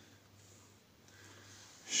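Quiet room tone with a faint low hum and a soft breath. A man's voice starts right at the end.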